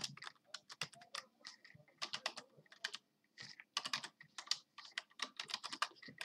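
Quiet typing on a computer keyboard: irregular runs of keystroke clicks with short pauses between them.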